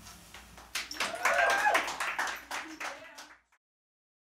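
A few people clapping with voices mixed in, just after the end of the acoustic song; the sound cuts off abruptly about three and a half seconds in.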